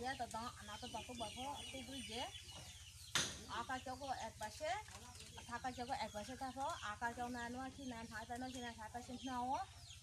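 A woman talking quietly in conversation, with a sharp click about three seconds in.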